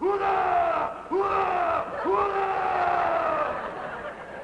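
A man's voice shouting three long, drawn-out calls in a row, each jumping up and then sliding slowly down in pitch, like a bellowed military command.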